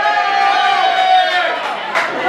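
Speech: voices talking in a small room, with nothing else standing out.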